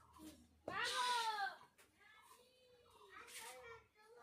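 A cat meowing: three drawn-out meows that rise and fall in pitch. The loudest comes about a second in, and the later two are fainter.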